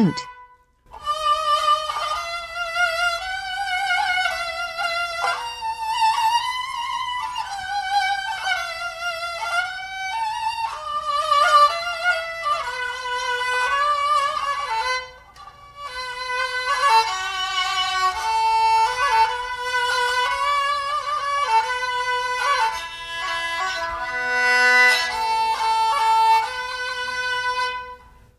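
Kokyū, a Japanese bowed string instrument, playing a slow solo melody with wide vibrato and sliding pitches, pausing briefly about halfway through.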